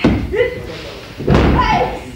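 Two heavy thuds of wrestlers hitting the ring, one at the start and one a little past halfway, with voices calling out around them.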